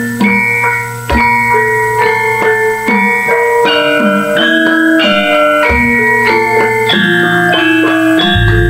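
Javanese gamelan ensemble playing: struck bronze metallophones and gong chimes ring out a stepped melody of held notes, with two deep strokes, about a second in and again near six seconds.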